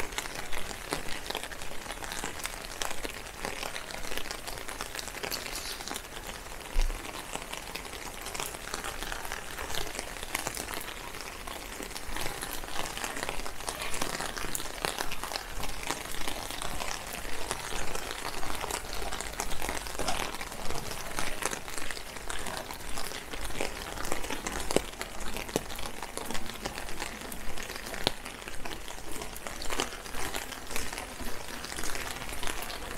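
Steady rain: a constant patter of raindrops with many small, irregular drop ticks close to the microphone.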